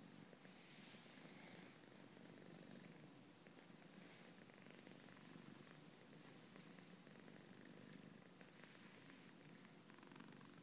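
Domestic cat purring steadily and faintly while being rubbed and massaged.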